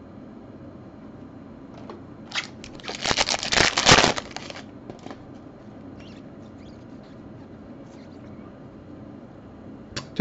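Crinkling of a foil trading-card pack wrapper, torn open and crumpled in a loud crackly burst of about two seconds, a couple of seconds in; faint clicks of cards being handled follow.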